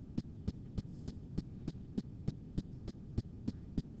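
Faint, evenly spaced ticks, about three a second, over a steady low hum.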